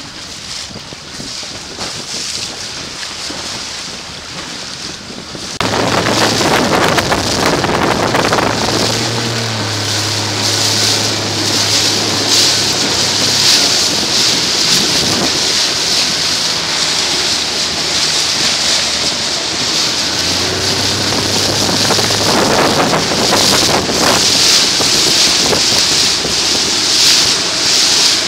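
Wind buffeting the microphone over rushing water on an open boat, quieter for the first five seconds or so. A low, steady motorboat engine hum comes in about nine seconds in and again later.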